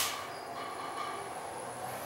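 Hitachi traction passenger elevator car travelling down one floor, heard from inside the car: a steady running noise with a faint high whine, after a short click at the very start.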